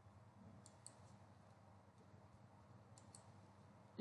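Near silence: room tone with a few faint clicks, a pair about a second in and another pair about three seconds in.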